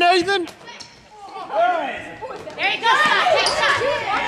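Shouting voices from spectators and players at a youth basketball game, with a short lull about a second in.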